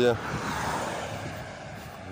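A road vehicle passing close by on the bridge: a rushing noise that peaks about half a second in and fades away over the next second.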